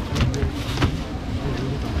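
A steady low motor hum, with sharp crinkles and clicks of plastic bags as bagged fish are handled.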